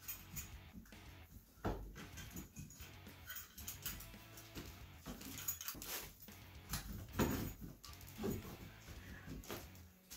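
Faint, irregular scraping, rustling and small knocks as electrical cable is crammed into a metal wall box set in the drywall.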